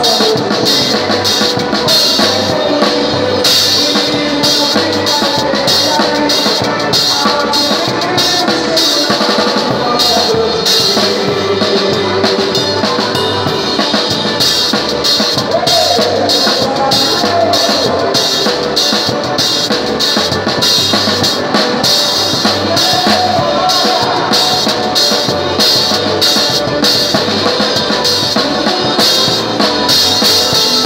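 A drum kit played close up in a live forró band, keeping a fast, steady beat with many quick cymbal and snare strokes, with the band's melody instruments underneath.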